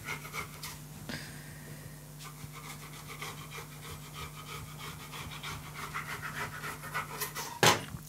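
Kitchen knife cutting a stack of jufka (phyllo) sheets into strips on a countertop: faint, irregular scraping and tapping strokes that come more often in the second half, over a steady low hum. One louder knock near the end.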